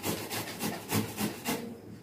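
Hand grating on a stainless-steel box grater: a rhythmic rasp of about four strokes a second that stops about one and a half seconds in.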